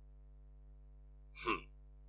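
A pause in conversation: near silence with a faint steady hum, broken once by a short spoken "hm" about one and a half seconds in.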